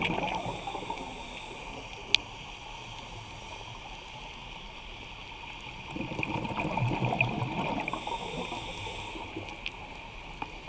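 Underwater recording of a scuba diver's exhaled bubbles gurgling out of the regulator, once at the start and again for about three seconds from six seconds in, over a steady underwater hiss. A single sharp click comes about two seconds in.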